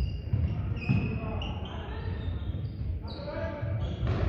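Athletic shoes squeaking in short high chirps on a sports-hall floor, several times, over the thud of running footsteps as players sprint and cut.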